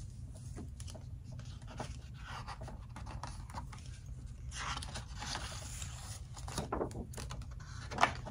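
Faint rustling and handling noise over a low steady hum, ending in a sharp swish of a paper picture-book page being turned.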